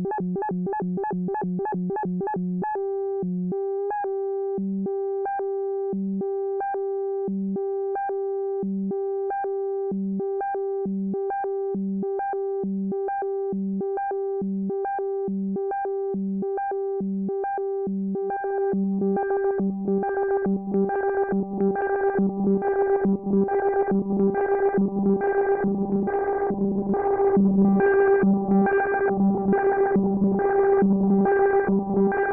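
A Moog Grandmother synthesizer holds a drone through a Moogerfooger MF-104M analog delay, whose delay time is switched by its square-wave LFO so the pitch jumps an octave back and forth in a regular pattern. It starts as a quick stutter of about four jumps a second, settles to about one jump a second, and from about two-thirds of the way through grows louder and busier.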